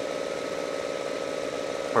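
A steady hum, like a small motor running, through a pause in speech.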